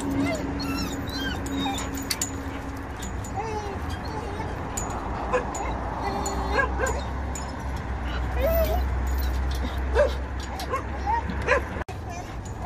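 Dogs whining and yipping in many short calls that rise and fall in pitch: an excited greeting of someone they know. A steady low rumble runs underneath.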